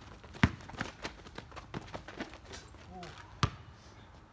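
A basketball bouncing on an asphalt driveway during play: a few sharp thuds, the loudest about half a second in and another at about three and a half seconds, with lighter footsteps and a brief voice between them.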